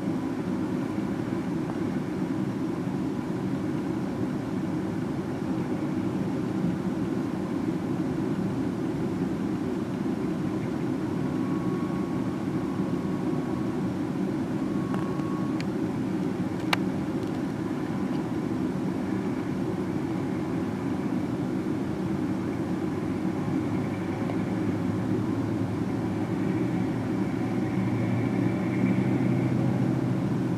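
Freight cars rolling slowly past on yard track: a steady low rumble. One sharp click sounds about two-thirds of the way through.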